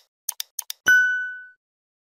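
Digital end-screen sound effects: four quick clicks in two pairs as on-screen buttons pop in, then a single bright bell-like ding about a second in that rings out for about half a second.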